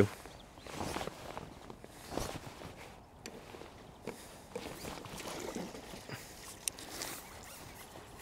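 Faint, scattered rustling and soft knocks of fishing tackle being handled on a wooden peg while a pole angler plays and nets a fish, with one sharp click near the end.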